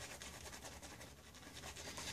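Faint rubbing and scratching of a boar-bristle shaving brush working shaving-soap lather on the neck and chin.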